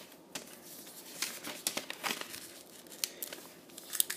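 A square of shiny origami paper being handled and creased: irregular crinkles, rustles and small crackles as the folds are pressed.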